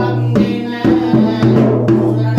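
Sri Lankan low-country drum (yak bera) played by hand in a brisk ritual rhythm, strokes coming every third to half second, over a steady low held tone.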